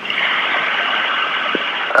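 Steady hiss of a long-distance telephone line, heard through the narrow band of the phone, with no one speaking.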